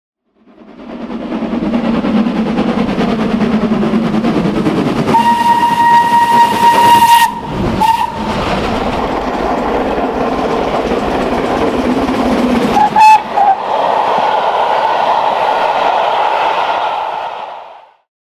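Steam locomotive running with its train, the sound fading in and later fading out, with one whistle blast of about two seconds, a short pip soon after, and a brief double toot later on.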